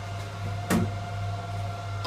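Titan TM20LV mini milling machine with a belt drive in place of its gear drive, running with a quiet, steady hum and a faint whine, with one sharp click a little under a second in. The quietness comes from the belt drive.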